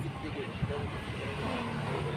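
Steady engine and tyre noise of a car, heard from inside its cabin while it drives slowly.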